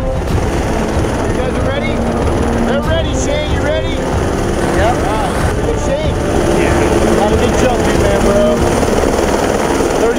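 Helicopter running close by, a loud steady din. Voices shout over it, short rising and falling calls between about one and six seconds in.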